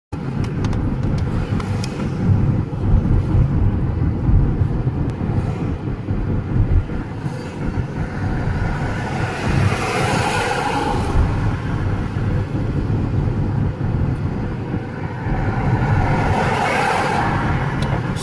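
Road and engine noise of a car driving along a town road, heard from the moving car itself as a steady low rumble. Two louder swells of traffic noise rise and fade, one about halfway through and one near the end, as other vehicles pass close by.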